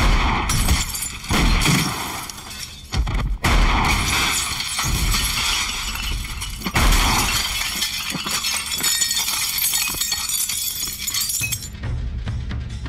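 Shotgun blasts from a pump-action shotgun, several in a row, each followed by glass and bottles shattering and showering down. The crash of breaking glass runs on between the shots and cuts off suddenly near the end.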